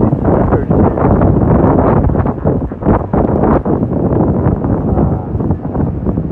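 Wind buffeting a phone microphone in loud, irregular gusts over the steady roar of Gullfoss waterfall.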